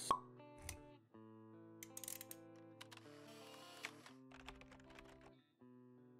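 Quiet intro-jingle music for an animated logo: held chords with scattered light clicks, opening with a single pop sound effect.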